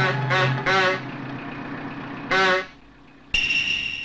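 Donkey braying: a run of short, wavering pulses in the first second, then one more about two and a half seconds in. A sudden steady high-pitched tone starts near the end.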